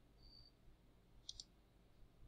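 Faint computer mouse clicks, two in quick succession about a second in, over near silence.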